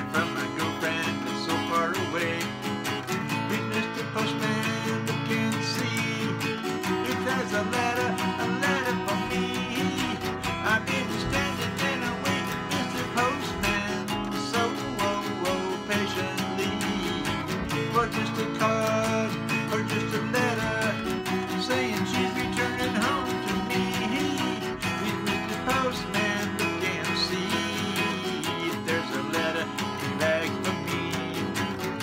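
Acoustic guitar being strummed steadily in a country-style accompaniment, with a man's voice singing over it in places.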